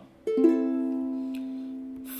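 A soprano-type ukulele strummed once downward on an A minor chord about a quarter second in, its strings sounding in quick succession, then left ringing and slowly fading.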